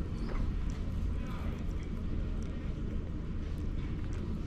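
Outdoor market-square ambience: people's voices and footsteps on paving over a steady low rumble.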